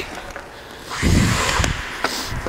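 Hockey skate blades scraping across rink ice as a skater glides back and pulls up about a second in, with a short click of the stick blade on a puck near the end.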